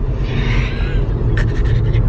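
Road noise inside a moving car's cabin: a steady low rumble of tyres and engine, with a few faint clicks about one and a half seconds in.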